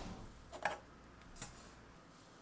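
Granulated sugar poured into a glass mug that stands inside a stainless steel pot: a faint rustle of grains, then a few light clicks of glass against the pot, the loudest just over half a second in.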